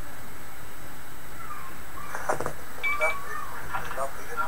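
Steady hiss from the radio link, then from about a second and a half in a distorted, harsh voice coming through the small speaker of the FRN internet radio client as a remote station transmits, with a few clicks and a short beep near the three-second mark.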